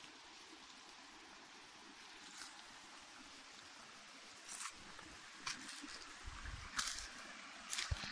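A faint steady hiss, then from about halfway scattered rustles, crackles and knocks that grow louder and closer together near the end: movement through forest undergrowth and handling of a handheld camera.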